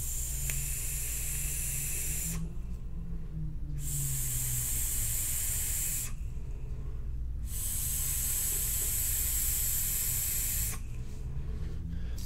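Mad Hatter rebuildable dripping atomizer, its five-wrap 24-gauge Kanthal coil freshly wetted with e-liquid, fired during a long draw: a hiss of coil vapor and air pulled through the side airflow, in three long stretches with short breaks between them.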